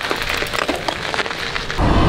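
Mountain bike tyres rolling over loose gravel, a dense crackle of many small crunching clicks. Near the end it gives way to louder music.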